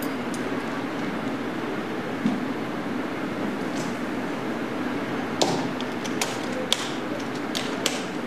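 An acoustic guitar's hard case being closed. Its latches snap shut in a handful of sharp clicks over the last three seconds, against a steady low hum.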